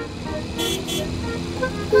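Cartoon car engine running steadily as a small car approaches, over light background music.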